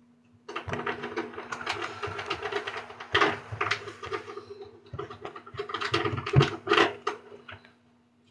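Rapid, irregular scraping and scratching of a sharp tool against the corroded battery contacts of a child's toy, crusted with battery-acid residue. It comes in two spells with a short pause about halfway through.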